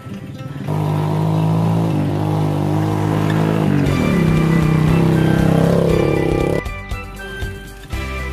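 A small motorcycle engine running loudly over background music, its pitch shifting midway, cutting off abruptly near the end.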